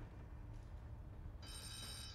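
A telephone rings with a short, high electronic ring starting about one and a half seconds in, over a low steady rumble.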